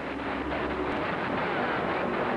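CB radio receiver giving out a steady rush of static hiss, with a weak, garbled voice faintly wavering under it. It is a distant station's signal fading out in poor band conditions.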